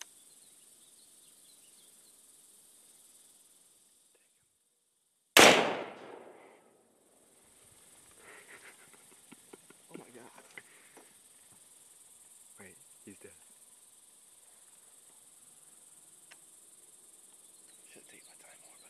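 A single rifle shot about five seconds in, loud and sharp with a short echo trailing off, fired at feeding wild hogs. Faint scattered rustles and knocks follow for several seconds as the hogs scatter into the brush.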